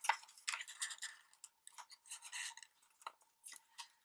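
Light, scattered clicks and rustles of a small cardboard box of Scotch adhesive dots being handled.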